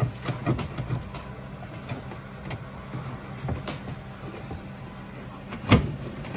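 Plastic cable snake being pushed and worked along the edge of a car's headliner and roof trim, giving scraping and rustling with scattered small clicks. A louder clatter of knocks comes near the end, over a steady low hum.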